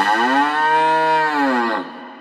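A cow mooing once: one long moo that rises and then falls in pitch over about a second and a half, followed by an echoing tail that dies away.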